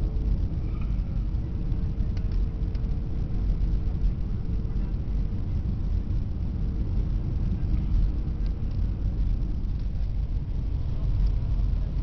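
Steady low rumble of jet airliner cabin noise: engines and airflow heard from inside, by a window seat. A faint steady hum runs through the first half.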